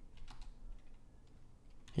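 Faint computer keyboard typing: a handful of soft keystrokes, mostly in the first half second.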